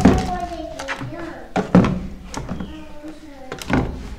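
Bottles and a bathroom cabinet door being handled: a few knocks, one at the start, one about two seconds in and one near the end, under low voices.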